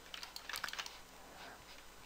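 Faint, irregular clicks and taps from a computer keyboard and mouse, several in the first second and fewer after.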